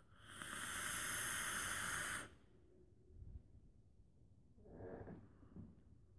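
A vaper taking a long draw of about two seconds through a rebuildable dripping atomizer on a mechanical mod: a steady hiss of air through the atomizer that stops suddenly. About five seconds in comes a softer breathy exhale of the vapor.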